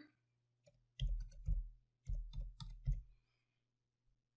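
Computer keyboard being typed on, a run of quick keystroke clicks in two short bursts between about one and three seconds in.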